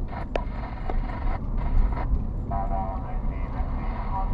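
Low rumble of a car's engine and tyres heard inside the cabin while driving. Two sharp ticks about 0.6 s apart in the first second fit a turn-signal indicator. A muffled voice comes in during the second half.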